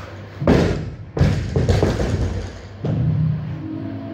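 Loaded barbell with rubber bumper plates dropped from overhead onto the platform: a loud thud about half a second in, a second heavy hit and a few smaller bounces, with background music.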